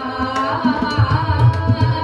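A woman singing a devotional bhajan, accompanied by tabla and harmonium. The low drum strokes and sharp tabla hits come several times a second under a steady held harmonium chord.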